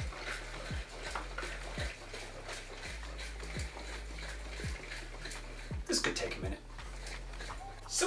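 Apple juice and dissolving sugar sloshing inside a glass demijohn as it is shaken by hand, with a couple of louder splashes about six seconds in. Background music with a low beat about once a second runs underneath.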